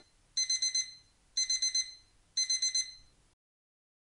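Simple digital alarm-clock beep: three bursts of four quick high-pitched beeps, one burst each second, signalling that the countdown timer has reached zero.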